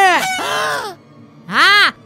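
Two loud, drawn-out yells, each rising and then falling in pitch: one at the start, and a shorter one about a second and a half in, after a brief pause.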